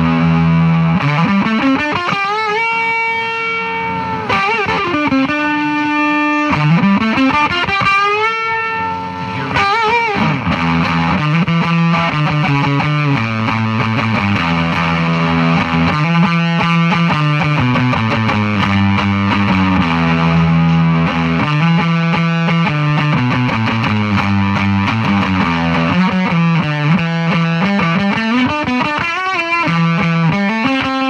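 Electric guitar played through a handmade LM386-based octave-up fuzz pedal, on the neck pickup with the guitar volume rolled back a little: fuzzy sustained notes with a high octave above them. Wide string bends in the first ten seconds, then a steadier riff.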